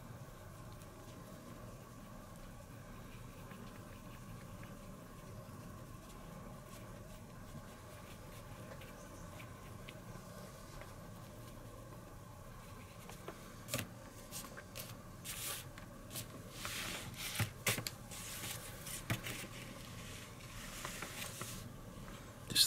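Quiet room tone with a steady faint hum while a wet paintbrush is worked over a tiny part. From a little past halfway, scattered small clicks and rustles of modelling tools being handled: the brush set down on the table and steel tweezers picked up.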